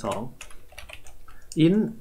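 Computer keyboard typing: a quick run of about half a dozen keystrokes, set between short bits of speech.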